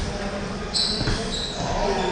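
Table tennis balls clicking against tables and floor in a large hall: a few sharp ticks with a short high ring, at the very start, just under a second in and about a second in, over background voices.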